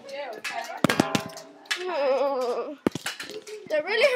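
Sharp knocks and clicks, a cluster about a second in and a single one just before three seconds, between which a girl's voice is drawn out in a wavering tone; more of her voice comes back near the end.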